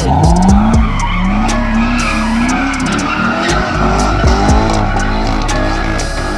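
Chevrolet Corvette's V8 held at high revs while it spins donuts, the engine note rising and falling repeatedly as the throttle is worked, over the continuous squeal and hiss of spinning rear tyres.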